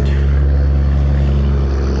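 Motorcycle engine running steadily at low revs, a loud, even low engine note with no change through the moment.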